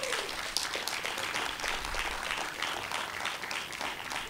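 A crowd applauding: many hands clapping in a dense, steady stream.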